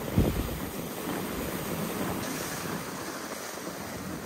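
Steady wind rushing over the microphone, with a brief low buffet from a gust just after the start.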